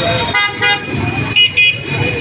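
Vehicle horns sounding in busy street traffic: two short beeps about half a second in, then two shorter, higher beeps about a second and a half in, over a steady low traffic rumble.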